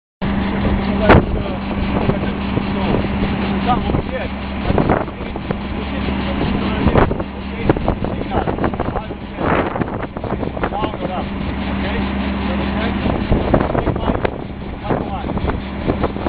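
Outdoor field recording: wind buffeting the microphone over a steady machine hum, with indistinct voices and scattered knocks. The hum drops out about thirteen seconds in.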